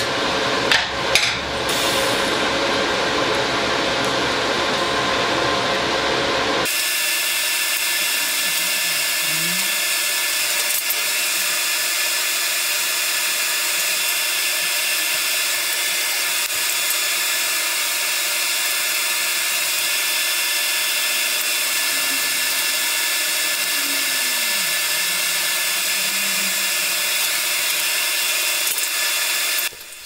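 TIG welding arc tacking a steel box-section frame, a steady hiss with a few knocks near the start. About seven seconds in the sound changes abruptly to a steady, even hum with several held tones that goes on unchanged to the end.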